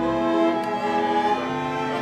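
Orchestra playing slow sustained chords, with bowed strings to the fore; the harmony shifts about a second and a half in.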